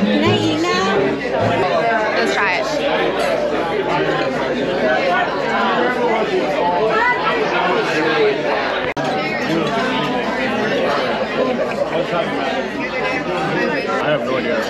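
Busy restaurant dining room: many diners talking at once in a steady hubbub, with music underneath. The sound drops out for a split second about nine seconds in.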